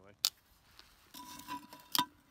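Metal tongs clicking and scraping on a Dutch oven lid as hot charcoal briquettes are moved off it: a sharp click, a short scrape, then another sharp clink near the end.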